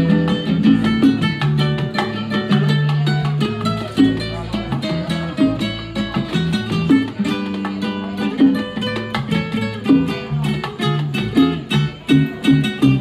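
Live Cuban instrumental trio music: an acoustic guitar plays a plucked melody over an electric bass guitar line and bongos.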